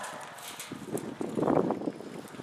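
A horse's hooves beating on soft arena dirt as it lopes around a barrel, loudest about one and a half seconds in.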